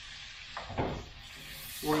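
Wooden spoon stirring onions into browned bacon in a hot pan, scraping strokes over a low sizzle, the strongest stroke a little under a second in.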